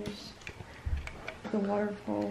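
Plastic Lego pieces being handled: a few light clicks and a soft low knock as a built section is set against the model on a glass-topped table.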